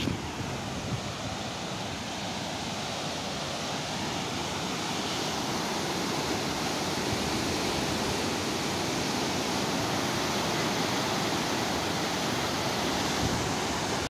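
Muddy floodwater rushing through a culvert under a concrete road bridge: a steady, even rush of turbulent water that grows louder from about four seconds in.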